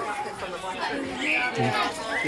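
A crowd chattering, with many voices overlapping at once.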